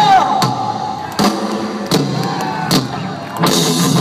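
Rock band playing live through a PA: the full band drops to a sparse, drum-led stretch with single hits about every three-quarters of a second, then comes back in full near the end.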